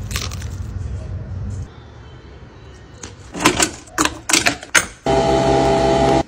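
A run of sharp clicks and clatters, then, about five seconds in, a coffee machine starts with a sudden, steady buzzing hum as it pumps coffee into a mug.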